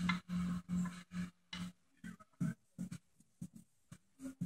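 A hand screwdriver backing a screw out of a wooden board. It gives a run of short creaks and scrapes, about two or three a second, which thin out to scattered clicks about halfway through.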